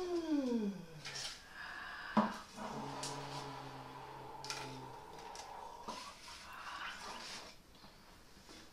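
A woman's voice sliding down in pitch, followed by a few sharp knocks about two seconds in and a steady, low held tone lasting a few seconds.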